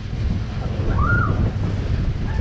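Wind buffeting the microphone of a camera riding a spinning Break Dance fairground ride, a steady heavy low rumble. A short high-pitched call rises and falls about a second in.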